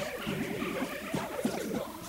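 Faint background music under a pause in the talk.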